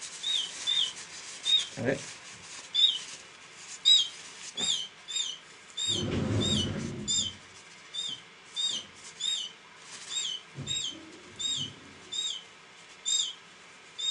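A 22-day-old hand-reared canary chick chirping over and over: short, high calls about twice a second, often in pairs. About six seconds in there is a second or so of rubbing handling noise.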